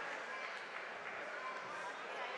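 Low, steady arena background of a crowd and distant voices, with no sharp sounds standing out.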